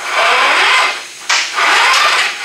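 Braided stainless-steel fuel hose scraping and rubbing against the steel truck frame as it is pulled out by hand, in two long drags.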